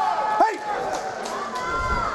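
A referee's short shouted start command about half a second in, over an arena crowd cheering and calling out with long drawn-out yells.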